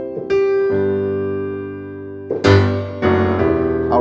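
Piano playing a C7 chord, the four chord with a bluesy added seventh, struck in two quick attacks and left to ring and fade. A second, louder chord is struck about two and a half seconds in and held.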